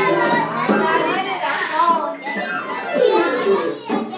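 Several children's voices chattering and calling out over one another, with music playing underneath.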